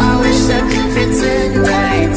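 Pop song playing: a singing voice over sustained chords and a steady beat.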